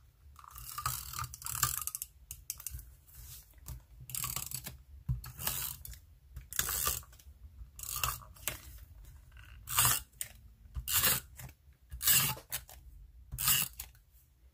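Adhesive tape runner drawn across paper in about a dozen short strokes, its roller and gears turning with each pass as it lays adhesive on the planner page.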